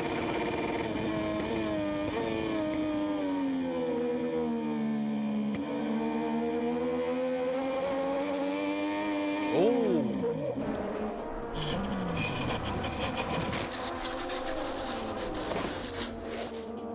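MotoGP racing motorcycle engines at full race pace: one engine note sags in pitch over a few seconds and climbs again as the bike rides through a corner, then bikes sweep past with a quick rise and fall in pitch about ten seconds in.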